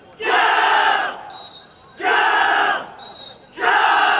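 A squad of commandos shouting a battle cry in unison with each strike of a punching drill: three loud group shouts, each under a second long, about 1.7 seconds apart. A short high tone sounds once between the first two shouts.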